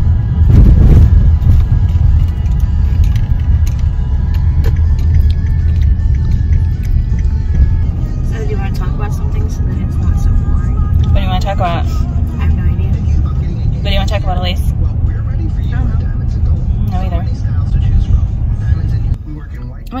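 Car radio playing music with a singing voice, over a heavy low rumble of road and engine noise inside the moving car's cabin. The radio is turned down about a second before the end, and the sound drops suddenly.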